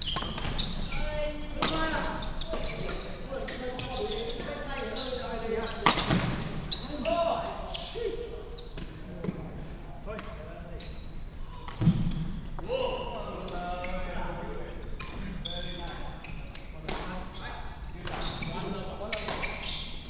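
Badminton rally in a large, echoing sports hall: repeated sharp clicks of rackets striking the shuttlecock and thuds of players' feet on the wooden court, with two louder impacts about six and twelve seconds in. People's voices carry through the hall.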